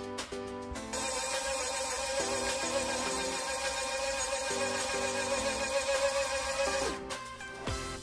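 Electronic powder dispenser (Frankford Arsenal Intellidropper) running its motor to drop ball powder into the pan: a steady whir with a hiss of trickling grains for about six seconds, stopping abruptly near the end, over background music.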